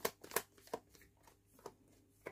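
Deck of tarot cards shuffled by hand: a few soft, short card clicks, spaced out and thinning toward the end.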